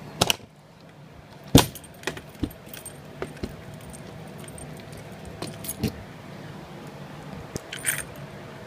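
A bunch of keys hanging in a travel trailer's door lock jangling as the door is handled, with a series of sharp clicks and knocks, the loudest about one and a half seconds in.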